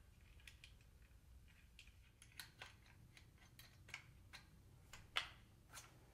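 Faint, scattered small metal clicks as hex nuts are threaded by hand onto the steel U-bolt of a rowing-machine handle, over near silence. The clearest click comes about five seconds in.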